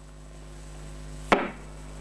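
A single sharp knock about a second and a half in, over a faint steady hum.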